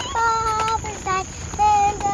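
A young girl singing a few held notes, each about half a second long, with short breaks between them.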